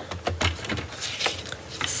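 Paper trimmer handling as cardstock is lined up and cut: a few light clicks and taps, with soft thumps near the start.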